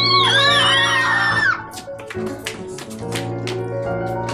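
A high-pitched, wavering scream of fright that breaks off about a second and a half in, over background music with a steady beat.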